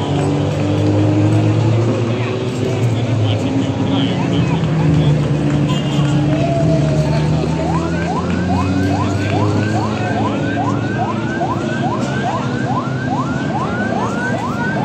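Race cars' engines running as the cars drive down past in a line. From about eight seconds in, a vehicle siren sounds over them, a quick rising whoop repeated about twice a second.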